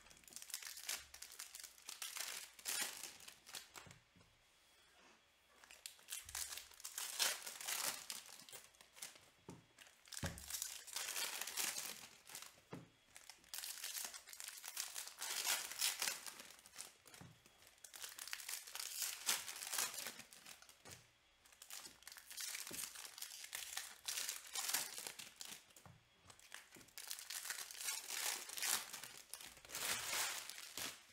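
Foil trading-card pack wrappers being torn open and crinkled in repeated bursts, one pack after another, with a few soft thumps as the cards are set down on a stack.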